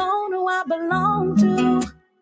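A song: a woman singing a melody over acoustic guitar, the music dropping out briefly right at the end.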